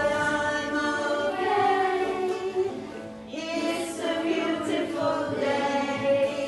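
A group of children singing an English greeting song together, with a short dip about halfway through before the singing picks up again.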